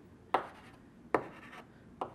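Chalk tapping sharply against a blackboard twice, about a second apart, marking dots on hand-drawn axes.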